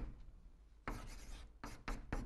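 Chalk writing on a chalkboard in short scratchy strokes: a pause, then a longer stroke about halfway through and two quick short strokes near the end.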